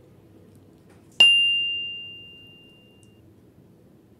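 A single bright ding about a second in, ringing out and fading over about two seconds: a notification-chime sound effect of the kind laid under a subscribe-button animation.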